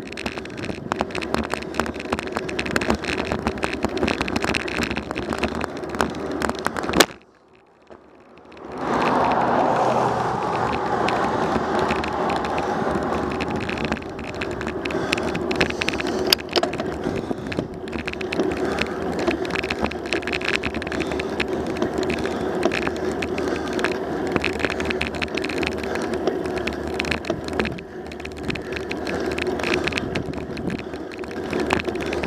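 Bicycle riding along asphalt, heard from a bike-mounted camera: wind rushing over the microphone with tyre noise and many small rattles and clicks. About a quarter of the way in, a sharp crack is followed by a near-silent dropout of about a second and a half, and then the riding noise returns.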